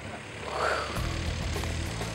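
A woman's breathy, drawn-out "fuuuu" whoosh, imitating the rush of air in freefall. About a second in, background music with a low steady bass comes in.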